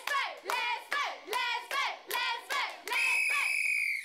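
High young girls' voices chanting in a quick, even rhythm, about two and a half syllables a second. Near the end it turns into one long held high note that cuts off suddenly.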